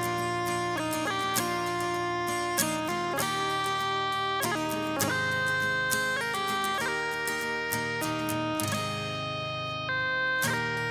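Instrumental break in a folk song: guitar playing under a held, sustained melody line whose notes change about once a second, over a steady low drone.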